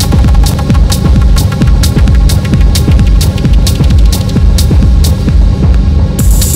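Techno from a DJ mix: a steady driving bass pulse under sustained synth tones, with a crisp hi-hat about twice a second. The hi-hats drop out near the end.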